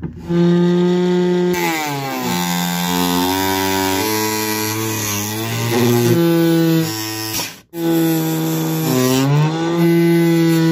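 Small electric bench saw cutting PVC pipe into rings: a loud pitched motor whine that sinks in pitch as the blade bites into the pipe and climbs again as it frees. The whine shifts between several pitches, and the sound cuts out briefly about three-quarters of the way through.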